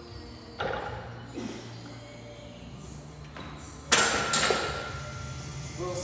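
A loaded barbell with bumper plates set down onto a steel rack with a loud clang and a brief metallic ring about four seconds in, after a smaller knock a little earlier. Music plays in the background.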